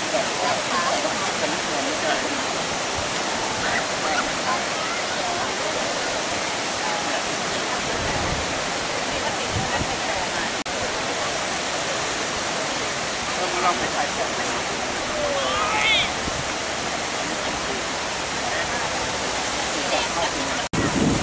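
Surf breaking on a sandy beach, a steady rush of waves, with faint voices talking nearby.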